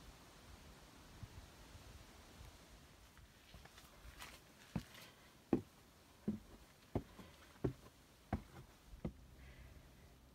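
Footsteps climbing wooden ladder-stairs: a steady series of about seven dull thuds, roughly one every two-thirds of a second, starting about halfway through, with fainter scuffs just before.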